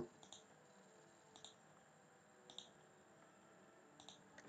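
Near silence with three faint computer mouse clicks, about a second apart.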